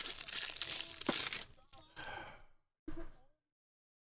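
Foil trading-card pack wrapper crinkling and tearing open, loudest in the first second and a half, with a few weaker crackles after. The sound cuts off to dead silence about three and a half seconds in.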